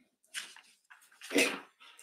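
Short bursts of a person's laughter, a faint one near the start and a louder one about a second and a half in.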